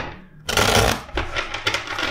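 A deck of tarot cards being shuffled: a sharp tap at the start, then a loud, dense flurry of cards for about half a second, followed by a run of quick card flicks.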